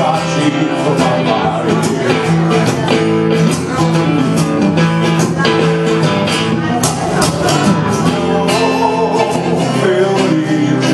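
Acoustic guitar strummed steadily through an instrumental passage of a live song.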